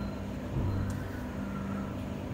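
Steady low electrical mains hum from a freshly powered single-phase pump starter panel, with faint background noise.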